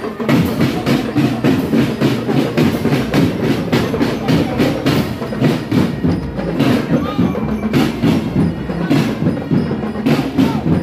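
Marching drum band playing, large marching bass drums and other percussion beating a brisk, steady rhythm.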